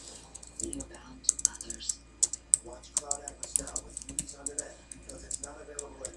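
Typing on a computer keyboard: a quick, irregular run of key clicks, with television speech faintly underneath.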